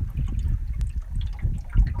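Wind buffeting the microphone in an uneven low rumble, with river water lapping and trickling against the jon boat's hull and a couple of small knocks.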